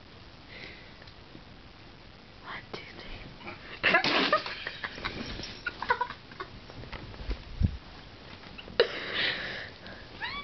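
A young woman laughing hard in breathy, wheezing bursts with sniffs between, the strongest about four seconds in and again near the end.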